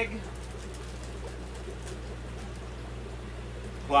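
Steady low hum of fish-room equipment running, with a few faint ticks.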